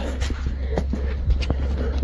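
Footsteps and camera handling: a few soft, short knocks and rustles over a low steady rumble.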